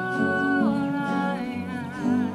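Voices singing a slow worship song in long held notes, over acoustic guitar.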